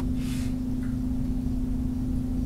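A steady low hum on one pitch over a low rumble and hiss, with a brief soft hiss just after the start.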